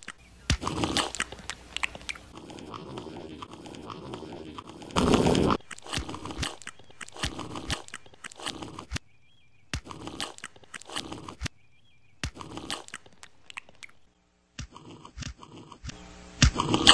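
Chewing and crunching of food, a string of sharp irregular crunches about one every half second to a second, the loudest about five seconds in.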